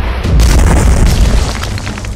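A loud boom sound effect, a dense crashing rumble that swells a moment after the start and fades by the end, over intro music.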